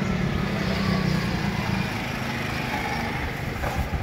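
A motor vehicle's engine running close by on the street, a steady low hum that eases off after about two and a half seconds.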